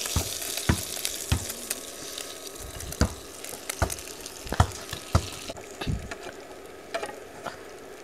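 Hot oil sizzling in a frying pan of red snapper, with a dozen or so sharp clicks of a metal spatula against the pan and plate as the fried fish is lifted out. The hiss thins about two-thirds of the way through.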